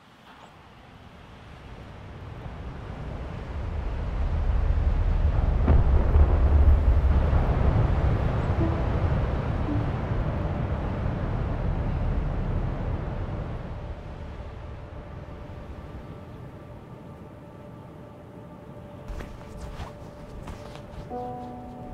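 A deep rumble of wind and breaking surf that swells up from silence, peaks about six seconds in, then slowly dies away. Faint sustained musical tones come in near the end.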